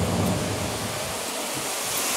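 Wind blowing on the microphone: a steady rushing hiss with no distinct events.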